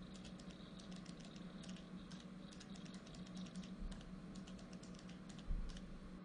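Faint, irregular clicking of computer-keyboard typing, with a steady low hum underneath.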